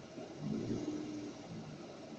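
Street traffic engines heard from inside a car, a low rumble under a steady hiss; a low engine hum swells louder about half a second in and eases off after about a second.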